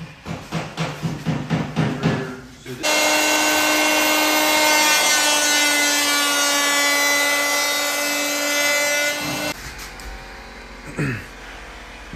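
Electric hand planer running at full speed for about six seconds, cutting the scribed edge of a painted cabinet filler strip as a steady high whine, then cutting off suddenly. Before it, a run of quick scratching strokes.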